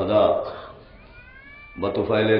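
A man's voice reciting in a drawn-out, sung tone, trailing off about half a second in. In the pause that follows, a faint high tone rises and levels off.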